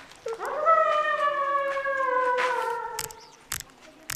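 A woman imitating an elephant's trumpet with her voice: one long, high call of about three seconds that slides slowly down in pitch, followed by a few sharp clicks near the end.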